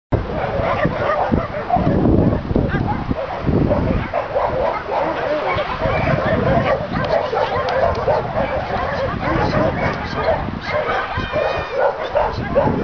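Dogs barking and yelping without a break, several calls overlapping, with a high wavering whine near the end.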